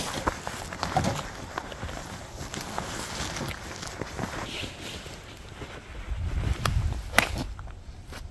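Footsteps walking over a stone flagstone path, with wind rumbling on the microphone. Near the end, one sharp crack of a driver striking a golf ball off the tee.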